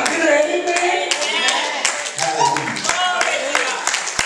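Church congregation clapping along while a preacher's voice comes through a microphone in drawn-out, sung-like phrases. The claps grow more frequent and steadier near the end.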